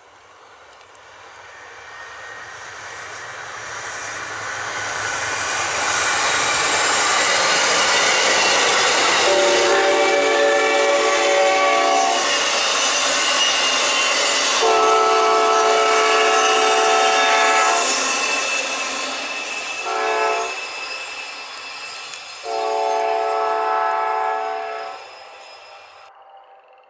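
Amtrak passenger train led by a GE P42DC diesel locomotive approaching and passing close by, with bilevel cars: a steady rush of locomotive and wheel noise that builds over the first several seconds and then holds. From about ten seconds in, the locomotive's air horn sounds long, long, short, long, the standard warning for a grade crossing.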